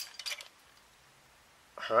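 A few quick light metallic clicks and clinks in the first half second as a hand-crank insulation tester (megger) and its bent steel crank handle are handled, then a quiet pause.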